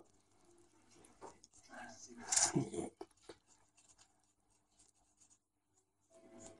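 Faint rubbing of a blue felt-tip marker pen being worked around the end of a thin silk-covered copper wire, with a brief low vocal murmur about two seconds in. The second half is near silence.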